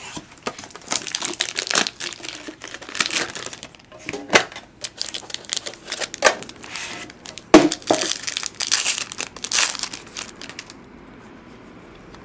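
Plastic wrapping crinkling and tearing as a sealed baseball card box is opened, with irregular rustling and a few sharp clicks; it stops near the end.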